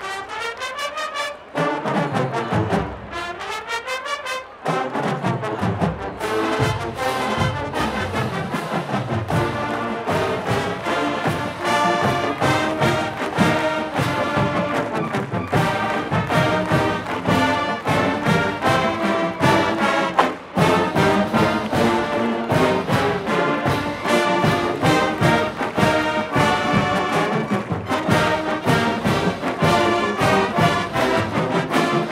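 College marching band playing, with massed brass and percussion. It opens with quick repeated short notes for a few seconds, then plays full and continuous, with a brief break about twenty seconds in.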